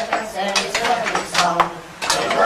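Mining tools clinking and tapping against rock in a cave: a handful of sharp, irregular metallic strikes, with voices underneath.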